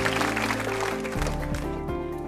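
Live band music: held chords over a bass line that steps to new notes a few times, growing slowly quieter.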